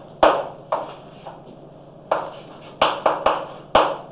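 Chalk writing on a blackboard: a series of sharp taps and short scratchy strokes, about seven in all, bunched in the second half.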